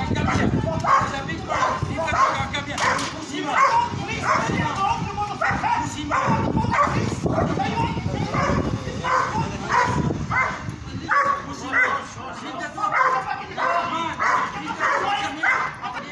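Large dog barking repeatedly and aggressively while held on a lead, about two barks a second.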